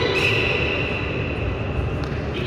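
Referee's whistle, one long steady blast, signalling the judges' decision.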